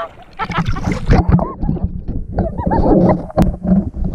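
Lake water splashing and bubbling right against a waterproof action camera at the surface, a dense run of quick bubbly chirps and crackles, the sound turning muffled as the camera dips under.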